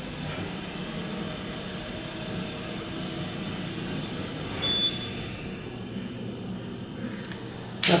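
Otis hydraulic elevator car in travel, heard from inside the cab as a steady low hum. The uploader says the drive sounds like an Otis HydroFit. A short high tone sounds about halfway through.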